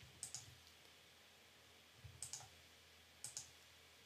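Three faint computer-mouse clicks about a second apart, over near-silent room tone.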